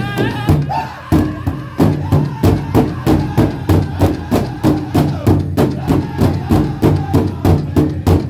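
Powwow drum group singing a chicken dance song while striking a large shared hand drum with drumsticks. The singing leads at first, then about a second in the drum strokes grow loud and even, about two and a half beats a second, with the singers' voices carrying on over them.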